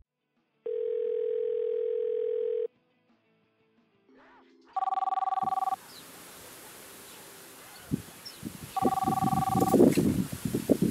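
A phone call being placed: a steady ringback tone sounds for about two seconds. Then a mobile phone rings with a two-tone ring, twice, about four seconds apart, with rustling near the end as the phone is picked up.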